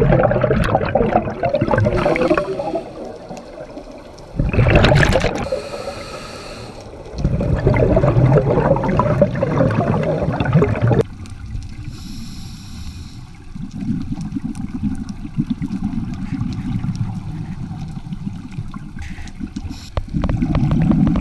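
Scuba regulator breathing heard underwater: loud rushes of exhaled bubbles lasting a few seconds each, alternating with the shorter, quieter hiss of an inhalation through the regulator. After about eleven seconds the bubble bursts stop and a quieter low rumble remains.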